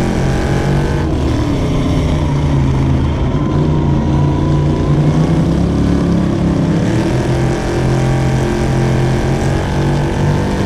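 A dirt-track sportsman race car's V8 engine running hard on track, heard from inside the cockpit. Its pitch dips about a second in and climbs again later as the throttle is lifted and reapplied through the turns, with other race cars running close by.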